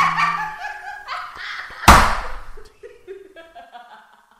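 A person laughing, with a sharp thump about two seconds in that is the loudest sound, then softer laughter trailing off.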